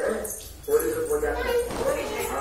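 A high-pitched voice making drawn-out vocal sounds, briefly dropping off about half a second in and then resuming.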